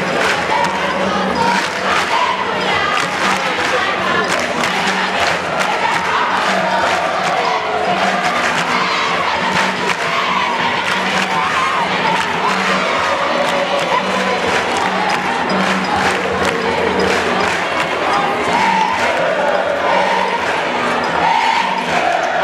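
A large crowd of secondary-school students singing jama cheering chants together, loud and steady, over a fast, dense beat of claps or percussion.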